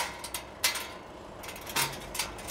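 A few light, spaced-out metal clicks and clinks as the latch on a steel fold-down table is released and the table swings down from a spare-wheel carrier.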